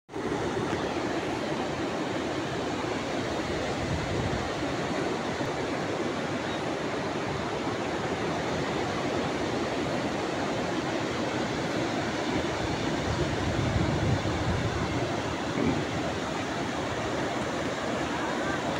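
Steady rushing noise of seaside wind and surf, with wind buffeting the phone microphone harder about thirteen to fourteen seconds in.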